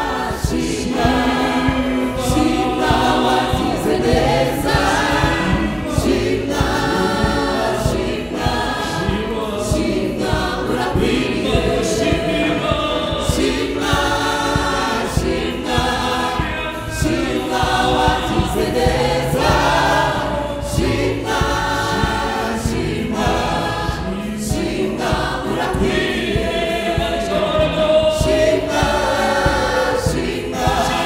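Rwandan gospel choir of mixed women's and men's voices singing in harmony through microphones, over a steady beat.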